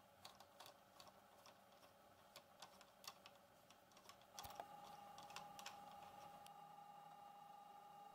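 Near silence with faint, irregular clicks of a small screwdriver turning a screw into a plastic servo mount. About halfway through a faint steady hum sets in.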